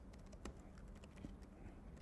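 Faint typing on a computer keyboard: scattered, irregular light key clicks.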